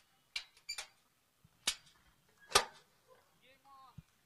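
Four sharp knocks or clicks, the loudest about two and a half seconds in, followed near the end by a short, faint voice.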